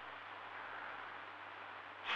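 Faint steady hiss over a low, steady hum from an idle CB radio set between transmissions.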